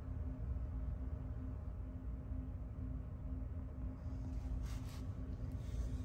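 Steady low hum of fish-room equipment with a faint steady tone, and a few faint rustles of handling about four to five seconds in and again near the end.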